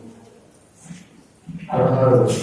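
A man's voice through a microphone and hall speakers: a short pause, then he resumes in a sung-out, chant-like tone about one and a half seconds in.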